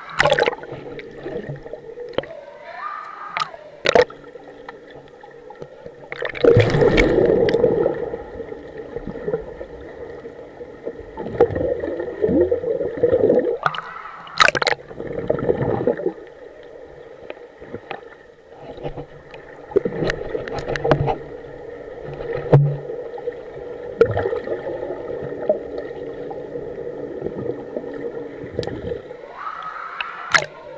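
Pool water heard through an action camera as it goes under and back above the surface: muffled gurgling and bubbling with louder surges of splashing, over a steady hum.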